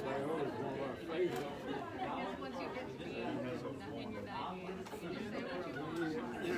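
Indistinct chatter of several voices talking in the room, with no single clear speaker.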